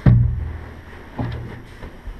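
A heavy thump as a person drops onto the padded cushions of a boat's cabin berth, with a low boom that fades over about half a second, then a second, softer thump a little over a second in as he settles back.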